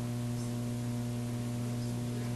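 Steady electrical mains hum: a low drone with a second, higher tone above it, over a constant faint hiss.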